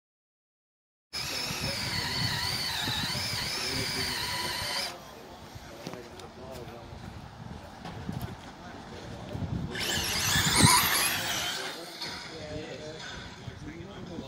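Electric RC touring car running on the track: a high motor whine that rises and falls with the throttle, with one loud pass close by about ten seconds in.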